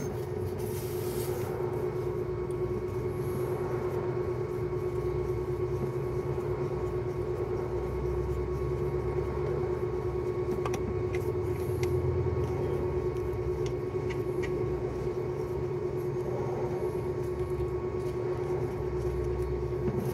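A steady mechanical hum, a constant mid-pitched tone over a low rumble, from a motor or engine running. A few light clicks come about halfway through.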